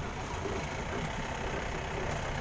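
Pickup truck running, a steady low rumble of engine and road noise heard from its open cargo bed.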